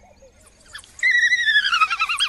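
African wild dogs twittering: high, wavering squeals that start suddenly about a second in and slide down in pitch.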